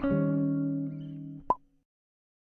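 Jazz guitar's final chord struck and left to ring, fading steadily; about a second and a half in, a short click as the strings are damped, then the sound stops.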